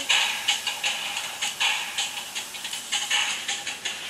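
A dog huffing and rustling on bedding as it roots excitedly at bracelets: a run of short, irregular breathy bursts.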